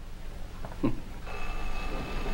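A telephone starts ringing about a second in, a steady bell tone that holds to the end, after a man's brief word.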